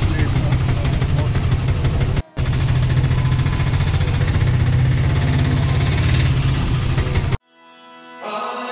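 Auto-rickshaw engine running under way, heard from inside the passenger cabin as a loud, steady low rumble with road noise. The noise drops out briefly a little after two seconds in and cuts off suddenly near the end.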